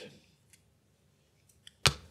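A board-game piece set down on the game board with one sharp click near the end, after a few faint clicks of pieces being handled.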